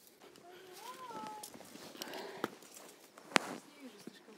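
A brief faint voice about a second in, its pitch rising and then falling, followed by two sharp clicks, the second one louder, near the end.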